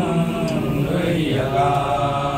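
Men chanting a Sanskrit hymn to Shiva in a slow, drawn-out melody, holding long notes, with a brief break and a new held phrase about a second and a half in.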